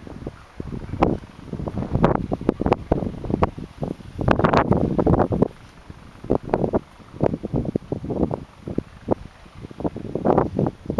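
Several large dogs eating from steel bowls: an irregular run of short clicks and crunches from chewing and from bowls knocking, with wind buffeting the microphone, heaviest about four to five seconds in.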